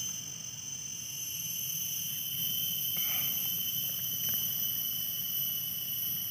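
Steady chorus of insects, several high-pitched tones held without a break, over a low background rumble.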